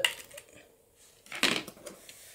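Scissors cutting through thin clear blister-pack plastic: a brief crisp snip with a plastic crackle about one and a half seconds in.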